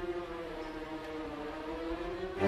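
Orchestra holding one long note, its pitch sinking slightly.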